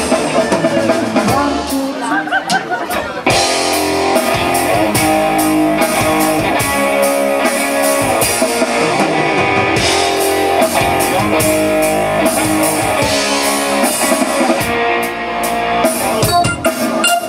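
Live pop-rock band playing through a PA: electric guitar, bass guitar, keyboard and drum kit, with the band's sound changing about three seconds in.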